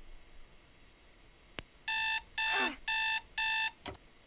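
Electronic bedside alarm clock beeping four times in quick succession, each beep a steady high tone, then a click near the end as it is switched off. A single sharp click comes just before the first beep, and a brief falling tone sweeps down under the second beep.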